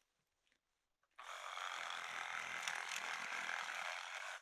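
A Makita 18V cordless reciprocating saw starts about a second in and runs steadily, its blade cutting through thin bamboo stems.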